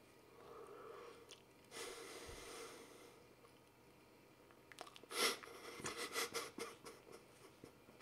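A man chewing a mouthful of banana close to the microphone. There is a breath out through the nose about two seconds in, and a denser run of small mouth clicks and chewing noises from about five seconds in.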